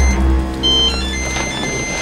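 Mobile phone ringtone playing a tune of short electronic beeps, the same phrase repeating about every two seconds, over a low rumble and a held chord.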